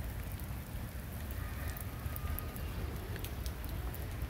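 Steady rain falling on pavement, with scattered fine raindrop ticks over a low, even rumble. A faint thin tone sounds briefly about a second and a half in.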